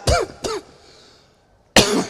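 A man clearing his throat twice in quick succession, followed near the end by a short, sharp burst.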